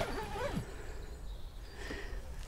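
A wavering, voice-like sound trails off in the first half second, leaving only a faint, steady low rumble of background noise.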